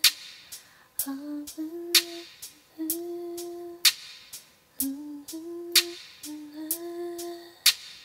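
Woman humming a slow R&B melody in short held phrases, several starting with a small upward slide in pitch. A sharp percussive hit falls about every two seconds, with softer ticks between, and no other backing.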